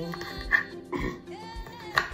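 Background music with a steady beat of about two low thuds a second under held tones.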